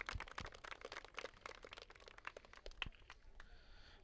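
Faint, irregular crackling made of many small clicks each second.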